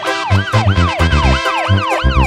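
Tierra Caliente band music in an instrumental break, led by a siren-like wail that sweeps up and down about four to five times a second over a pulsing bass beat.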